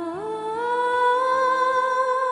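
Background song in which a voice holds one long note. The note slides up a little near the start and is then held steady over soft, sustained low accompaniment.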